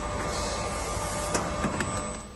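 Injection-moulding machine running: a steady mechanical hum and whir with a few short clicks in the second half.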